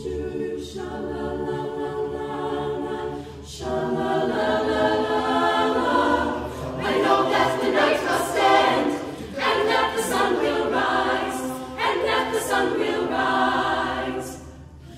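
Mixed male and female a cappella group singing held chords in several parts, unaccompanied, the chord moving on every two to three seconds.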